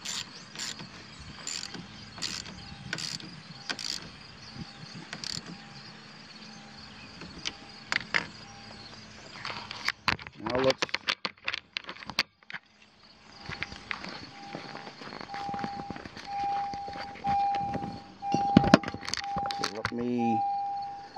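Ratchet wrench clicking in short strokes as a car battery's negative terminal clamp is tightened back on, then a clatter as the tool is set down on the battery. Near the end a repeating electronic beep at one pitch starts up.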